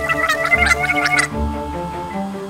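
Cartoon gargling sound effect, a bubbly warble as water fills the character's open mouth, stopping abruptly about two-thirds of the way through, over background music.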